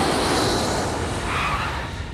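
A rushing whoosh sound effect, like an aircraft passing, that swells, is loudest about half a second in, and then fades away.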